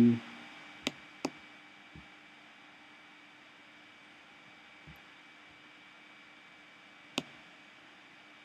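A few short, sharp computer mouse clicks: two close together about a second in, two fainter ones later, and another about seven seconds in. Under them a faint steady hiss and hum.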